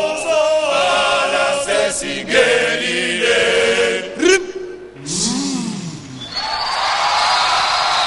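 A group of voices singing a chant-like song together in harmony, which stops about four seconds in. A single voice then slides up and back down, and an audience breaks into cheering and applause.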